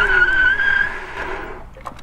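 Four-piston hydraulic disc brakes on a fat-tire e-bike squealing in a hard stop that locks up the wheel: one steady high squeal, starting suddenly, holding for about a second and then fading away.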